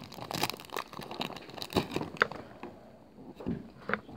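Foil Pokémon booster-pack wrapper crinkling in irregular bursts as it is handled and torn open, busiest in the first second and then in scattered crackles.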